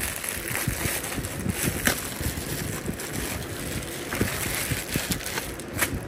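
Plastic bubble mailer crinkling and rustling as it is handled and opened, with irregular crackles throughout.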